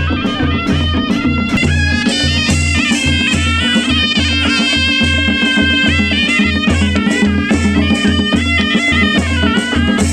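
A traditional Nepali wedding band playing live: a reedy wind instrument carries a wavering folk melody over a steady drum beat, about two strokes a second, with regular cymbal clashes.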